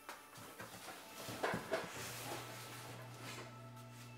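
A cardboard moving box being handled: rustling and a few short knocks, the two sharpest about a second and a half in, over soft background music.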